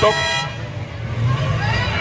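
Distant stock car engines running low, the field slowing after a red flag has stopped the race, with a short rising whine near the end.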